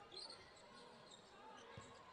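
Faint court sound of a basketball being dribbled on a wooden floor, a few soft bounces.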